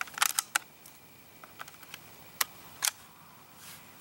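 Clicks of a Crosman 760 Pumpmaster multi-pump air rifle being worked at its receiver: a quick run of clicks at the start, a few faint ticks, then two sharp clicks about half a second apart past the halfway point.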